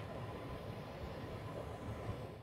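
Steady, low background rumble with no distinct events.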